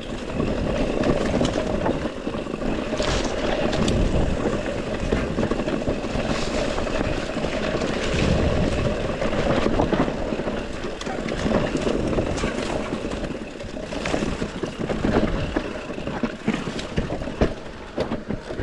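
Mountain bike descending a rough dirt trail: steady rush of wind and tyre noise on the camera microphone, broken by frequent knocks and rattles as the bike hits bumps.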